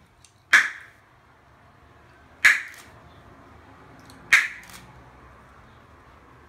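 A boy's extremely loud tongue clicks: three sharp cracks about two seconds apart, each followed by a fainter click.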